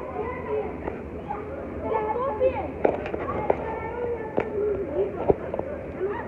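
Children's voices chattering and calling out during a soccer game, with several sharp thuds of the ball being kicked, the loudest a little before the end.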